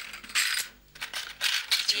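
Bangles and other jewellery clinking and jingling as they are lifted out of a box and handled, in two short bursts.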